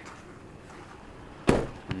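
One sharp knock about one and a half seconds in, followed by a smaller one just before the end, over a faint background.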